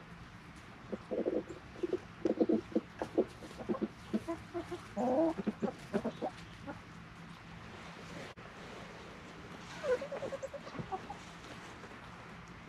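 A flock of feeding chickens clucking in short, irregular bursts, with one longer call that bends upward about five seconds in and another run of quick clucks near ten seconds.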